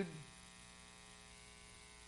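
A man's spoken word trails off just after the start, leaving a steady, faint electrical mains hum with many overtones on the audio.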